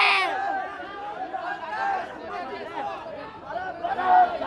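Crowd of men chattering and calling out over one another, many voices overlapping; a loud shout at the very start drops away quickly into the quieter babble.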